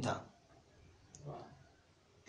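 A man's voice ending a word, then a pause in his talk with a faint click and a soft, low sound a little over a second in.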